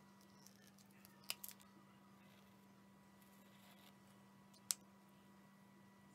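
Near silence: room tone with a steady faint hum, broken by a few light clicks about a second in and one sharper click near the end.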